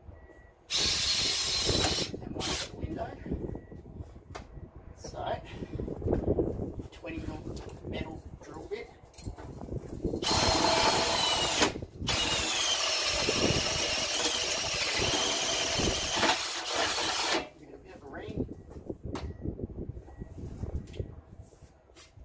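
Makita cordless drill boring through a meter box door: a short run about a second in, then a longer run about halfway through with a high whine that wavers as the bit cuts, starting with the pilot hole. Quieter handling and scraping sounds fall between the runs.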